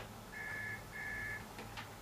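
Telephone ringing with the British double-ring cadence: two short, steady electronic trills close together, which answer to a call that is picked up seconds later.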